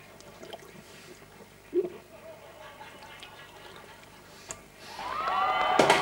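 Faint swallowing as a plastic bottle of Coca-Cola is drunk down, with a short low gulp about two seconds in. About five seconds in, a crowd breaks into loud cheering.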